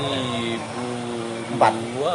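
A man's long, drawn-out hesitation sound, a held 'ehhh' on one steady pitch, while he tries to recall a year. A short breath or click comes near the end.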